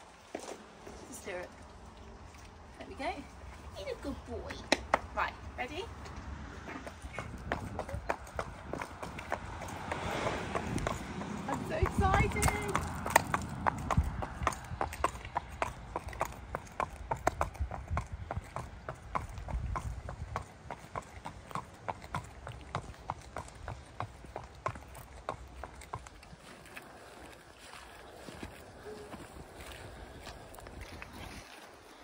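Horse walking on concrete and tarmac, its hooves clip-clopping in a steady rhythm that dies away near the end.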